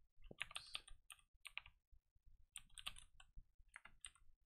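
Faint typing on a computer keyboard, keystrokes coming in short runs of a few clicks with brief pauses between them.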